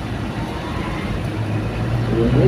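Steady vehicle engine and traffic noise in a stop-and-go city traffic jam, with a low engine hum that grows stronger about two-thirds of the way through.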